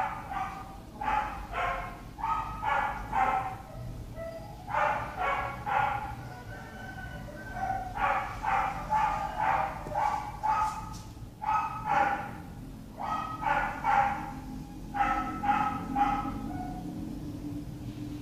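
A dog barking in quick runs of short, high yaps, three to six at a time with short pauses between the runs.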